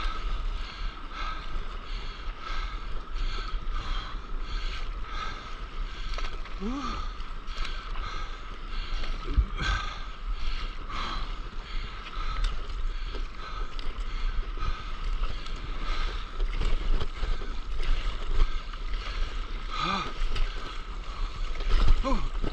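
Water splashing and sloshing around a stand-up paddleboard being paddled through the sea, with paddle strokes recurring about once a second over a low rumble of water and wind on the microphone.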